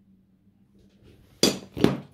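Two sharp clinks of steel Damascus bars knocking together as they are handled, about half a second apart in the second half; before them, only a faint hum.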